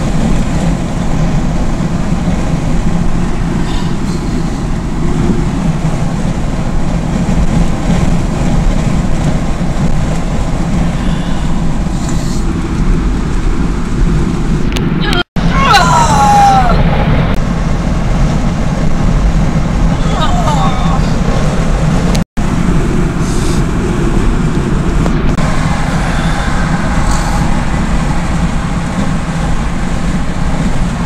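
Steady engine and tyre noise heard inside a vehicle's cabin at highway speed. About halfway through, a brief high falling sound rises above it, likely a voice. The audio cuts out for an instant twice.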